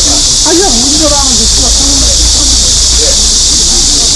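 A loud, steady high-pitched chorus of cicadas that does not change in level, over a low background rumble.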